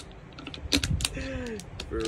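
Irregular clicks of laptop keyboard keys, a handful of taps spread over two seconds, with a short bit of voice partway through.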